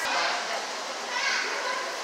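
Indistinct background chatter of other people, children's voices among them, with no clear words.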